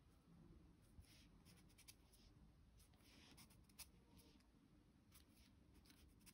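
Very faint strokes of a small paintbrush dabbing gouache onto paper, a few short scratchy passes with a small tick near the middle.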